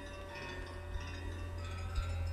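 Tinkling chime tones: several ringing notes at different pitches that overlap and change about a second in, over a steady low hum.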